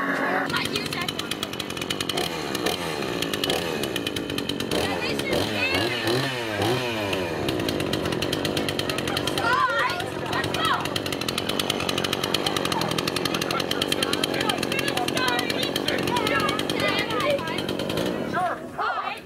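Two-stroke chainsaw engine running steadily for the whole stretch, with people's voices over it in several places.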